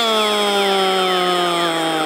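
Portuguese radio football commentator's long, drawn-out goal shout: one unbroken held vowel, sliding slowly down in pitch.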